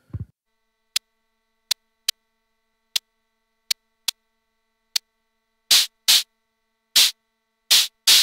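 Hi-hat-like bursts of white noise from a Steady State Fate Quantum Rainbow 2 analog noise module, cut into hits by an attack-release envelope and VCA. A soft low thump right at the start, then seven short, sharp hiss ticks at uneven intervals, then four longer, fuller bursts near the end.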